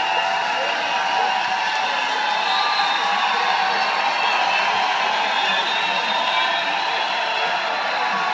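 Large open-air concert crowd between songs: many voices talking and calling out at once, with scattered cheers.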